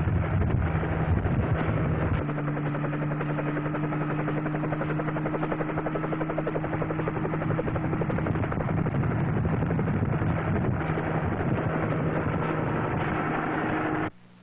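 Helicopter in flight, its rotor blades beating rapidly over a steady engine whine. About two seconds in, the deep rumble drops away and a higher steady whine comes through.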